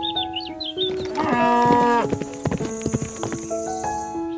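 A cow mooing once, about a second and a half long, falling in pitch at the end, over background music with sustained notes.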